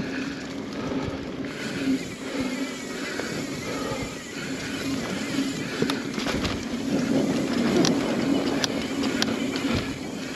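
Mountain bike rolling fast over a dirt and leaf-litter singletrack: the tyres run steadily on the ground while the chain and frame give short clicks and rattles over bumps.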